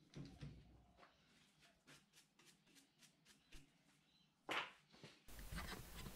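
Near silence, broken by a faint short noise about four and a half seconds in.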